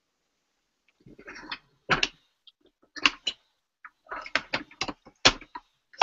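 Hard plastic clacks and knocks, with some brief rustling, as a clear acrylic stamp block and craft supplies are handled and set down on a wooden desk. The clacks start about a second in and come in an irregular string of eight or so.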